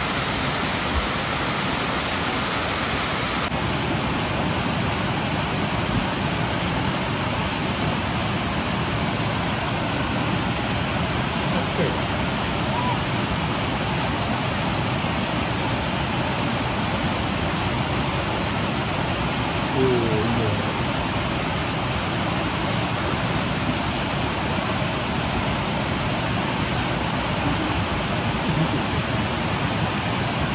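Steady rush of water from a small waterfall and a mountain stream cascading over rocks.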